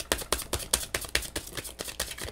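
A deck of tarot cards being shuffled by hand: a quick, even run of card-on-card flicks, about five a second.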